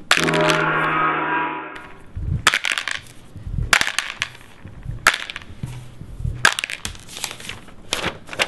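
A loud buzzing rattle for nearly two seconds, then a run of sharp clattering knocks and cracks with dull thumps, as of things being crushed and knocked about.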